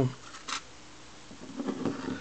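Small-parts handling while fitting a screw into a small radio's case: one light click about half a second in, then quiet room tone with faint handling sounds near the end.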